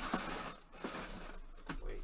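Rustling and crinkling of a fabric bag and packaging being handled, with a few sharp taps spread through the moment.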